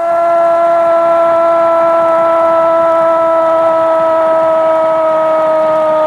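A horn sounding one long, unbroken note that sags slightly in pitch, loud over a faint noisy background.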